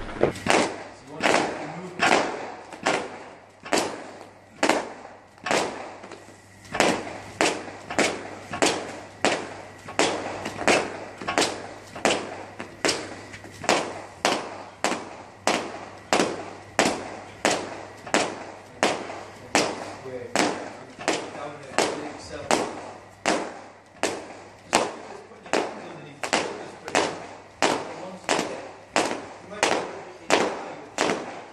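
Heavy battle rope slapping the floor in a steady rhythm, about three sharp smacks every two seconds, each ringing briefly in a large hall.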